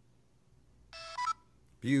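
LEGO Mindstorms EV3 brick's built-in speaker playing its short startup sound, a few quick buzzy electronic notes that step in pitch, about a second in. It is the sign that the brick has finished booting and is working again after failing to turn on.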